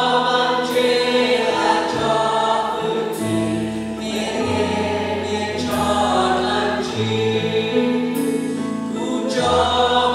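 A live worship band playing a praise song: electric and acoustic guitars, bass guitar and drums, with cymbal crashes every second or two, under voices singing together.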